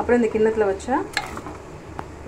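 Fried shallots, tomato and chillies being scraped from a pan into a steel mixer-grinder jar, with one sharp metal clink about a second in. A woman talks over it.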